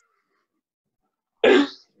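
Dead silence on the call line, then about a second and a half in, one short, loud burst of a man's voice breaking out through the mouth as laughter starts.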